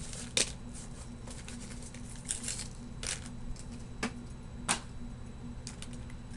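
Plastic bag rustling, with light clicks and knocks as a set of small Halloween cookie cutters is handled and taken out. A handful of sharp clicks are spread across several seconds, over a steady low hum.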